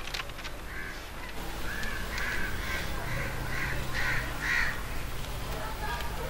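A crow cawing repeatedly: a run of about eight short caws, roughly two a second, fading out a little before the end.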